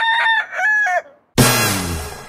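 A single rooster crow, a cock-a-doodle-doo about a second and a half long. It stops about a second in, and after a brief gap a loud hit starts music with drums near the end.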